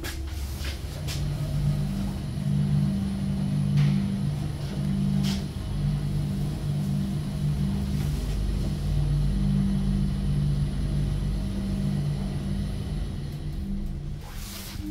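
KONE passenger elevator car travelling upward: a steady low hum of the drive with two pitched tones that come and go, over a low rumble, with a few faint clicks. The hum starts about two seconds in and stops near the end as the car comes to a halt.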